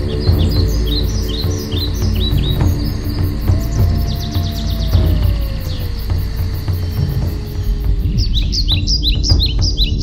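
Small birds chirping in quick runs of short falling notes, near the start and again near the end, with a brief trill in the middle, over slow ambient music: a sustained low drone and a long tone that slides slowly down in pitch.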